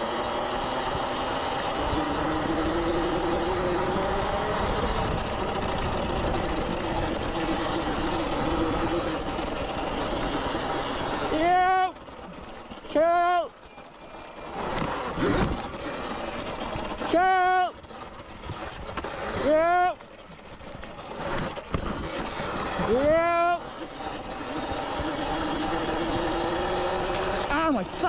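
72-volt Sur-Ron electric dirt bike's motor whining at speed, then in about five short throttle bursts in the second half, each a quick rise and fall in pitch, with tyre and wind noise on the trail.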